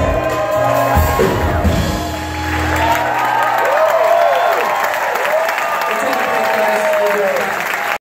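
A live song ends on drums and acoustic guitar in the first few seconds, then an audience applauds and cheers, with shouts and whoops rising and falling over the clapping.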